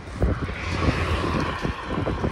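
Wind buffeting the microphone in uneven gusts, with a higher hiss that swells about half a second in and fades near the end.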